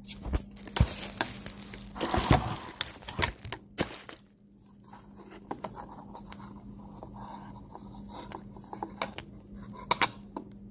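Hands scraping and wiping peanut butter off an egg over a bowl, with knocks and rubbing from the phone being handled close to the microphone. The knocking is busiest in the first four seconds, then gives way to softer scattered scrapes over a faint steady hum.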